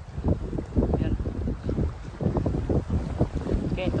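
Wind buffeting the microphone: an uneven low rumble that gusts irregularly.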